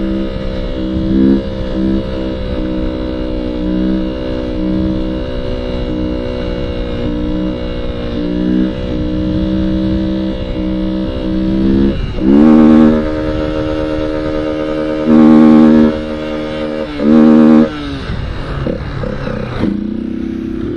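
Small motorcycle engine running at held throttle through a long wheelie, its pitch wavering slightly, with a low rumble of wind and road noise. Near the end there are three brief louder throttle surges.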